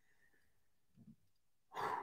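Near silence, then a short intake of breath near the end, just before speaking resumes.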